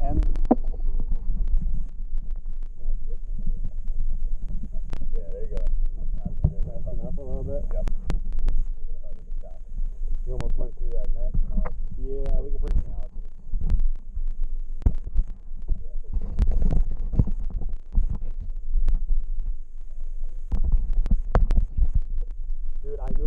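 Low rumbling and thumping on a body-worn camera's microphone, typical of wind buffeting and handling, with scattered sharp knocks and a few stretches of low murmured words.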